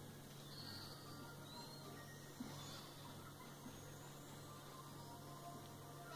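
Near silence: room tone with a steady low electrical hum, and one faint click a little over two seconds in.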